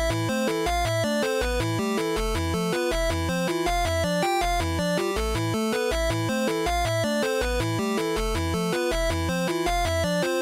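Background music: an electronic tune with a steady beat.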